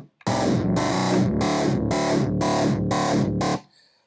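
Omnisphere's "The Big Nasty" factory patch, an arpeggiated synth sound with its stompbox and compressor effects on, playing a rhythmic run of repeated chord stabs, about three a second, that stops shortly before the end.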